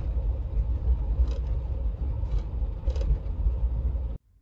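Steady low engine and road rumble heard inside the cab of a moving camper van.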